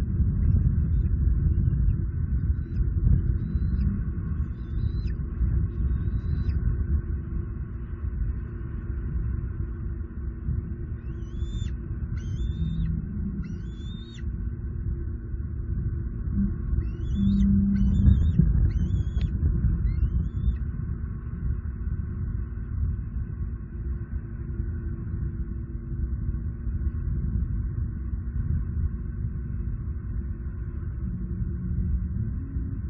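Steady low rumble of wind buffeting an outdoor microphone. Over it come three runs of short, high, rising chirping bird calls, each a few notes long, with the middle and last runs the clearest.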